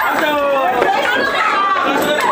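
Excited chatter of several voices, children's among them, talking and calling out over each other.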